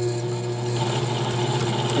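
Toroid winding machine running steadily as it winds 24-gauge wire onto a toroid's secondary: an even mechanical hum made of several steady tones, with a faint hiss coming up about a second in.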